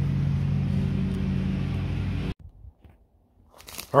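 An engine idling steadily with a low, even hum, cut off abruptly a little over two seconds in, after which there is near silence with a few faint rustles.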